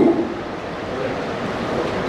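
Steady, even background noise of a hall, a low hiss with no voice in it.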